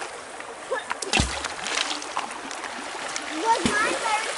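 Shallow creek running over stones, a steady rush of water, with a single splash about a second in as something is dropped into the water.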